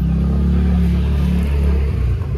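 A motorbike or scooter engine running at idle close by, a steady low drone.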